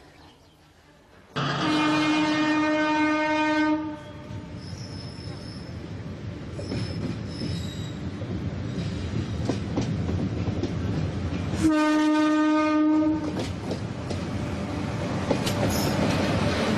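Passing passenger train hauled by an electric locomotive sounding its horn twice: a long steady blast about a second in and a shorter one about three-quarters of the way through. In between, the train runs by with a steady rumble of wheels on rails and a few brief high squeals.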